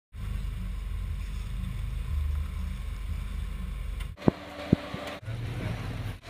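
Jeep Wrangler's engine running with a steady low rumble as it crawls over rock, with wind on the microphone. About four seconds in the sound cuts, and two sharp knocks half a second apart are followed by a low steady hum.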